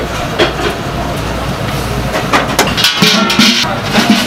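Pork-bone broth boiling hard in a large stainless cauldron, bubbling and spattering, with a low rumble that drops away about halfway through.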